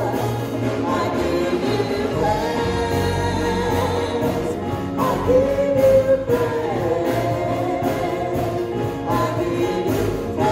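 Gospel worship music: a man sings lead into a microphone, holding long notes, over a choir and a steady bass line and beat.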